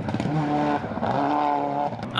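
Subaru Impreza WRX STi rally car's turbocharged flat-four engine revving hard as the car drives off along a gravel stage. Its pitch holds, dips briefly about halfway through, then climbs again.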